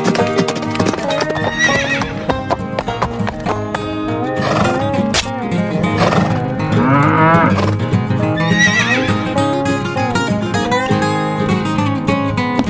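Horse whinnying four times over steady background music. Each whinny is a wavering, warbling call, and the longest comes about seven seconds in.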